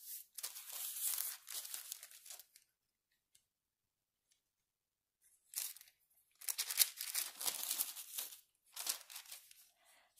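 Sheets of parchment paper rustling and crinkling as they are handled and smoothed over a diamond painting canvas, in two stretches: one in the first two seconds or so, another from about halfway to near the end, with a quiet gap between.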